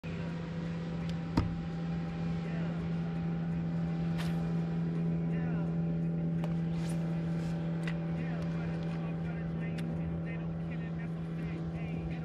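Bass boat's electric trolling motor humming steadily at a low pitch, with a sharp click about one and a half seconds in.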